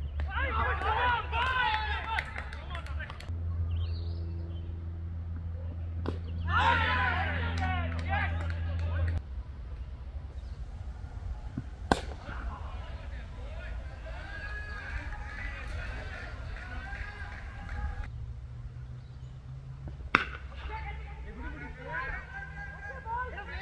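A cricket bat striking the ball with a single sharp crack about halfway through, and another near the end. Between them are people's voices talking and calling out, over a steady low rumble.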